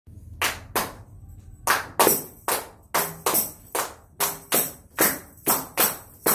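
Hand tambourine struck in a rhythmic pattern, each hit a sharp slap with the jingles ringing after it. Two hits, a short pause, then a steady run of about three hits a second.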